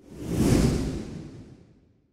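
A whoosh sound effect marking a cut to a title card: it swells over about half a second, then fades away over the next second or so.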